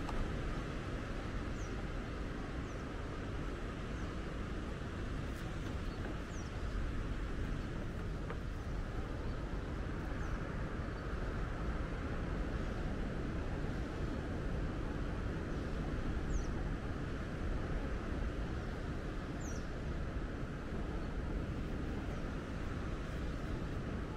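Steady outdoor background rumble and hiss, with a few faint, brief high bird chirps now and then.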